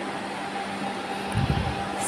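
Cooling fans of a 2000 W stereo power amplifier, 5-inch fans running directly on 230 V AC, blowing steadily: a broad, even rush of air with a low hum under it. A brief low thump comes about one and a half seconds in.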